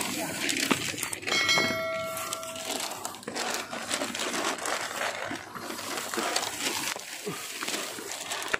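Footsteps and rustling from a handheld camera being carried up concrete steps, with faint voices. About a second and a half in, a steady pitched tone is held for over a second.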